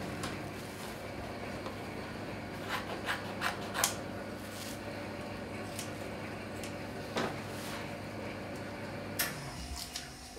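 Scissors snipping and hands handling soft cast padding: a few scattered short snips and rubs, over a steady low hum in the room.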